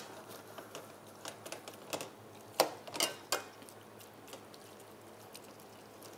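A metal utensil clinking and scraping against a wok as a beef stir-fry in sauce is stirred: a handful of sharp, irregular clicks over a faint steady hiss.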